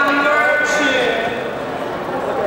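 Loud shouting voices, with one long held shout that breaks off just after the start, followed by more calling that quietens toward the end.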